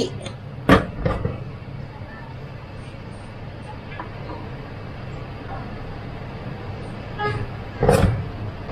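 Steady rushing noise from the stove under a pot at a rolling boil with a steamer tier on top, with one sharp knock about a second in.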